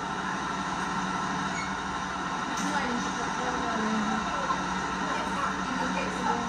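A school bus idling while stopped to pick up a child, a steady engine rumble heard through a TV's speaker, with faint voices underneath.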